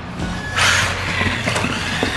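Traxxas Bandit electric RC buggy driving fast over smooth concrete, its motor and tyres rising to a louder rush about half a second in. Background music plays underneath.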